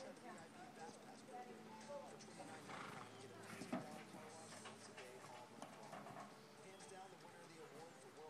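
A filly's hooves stepping on dirt and gravel, a few soft irregular steps with one sharper knock a little before four seconds in.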